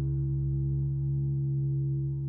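Steady low drone of several held notes from the backing music of a devotional hymn, with no singing over it.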